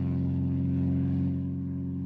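Piston engine of a single-engine crop-dusting aeroplane running steadily at low power as the plane taxis on the ground, an even, unchanging drone.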